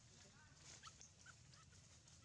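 Faint animal calls: a few short, high chirps and squeaks scattered through the middle, over near-silent background.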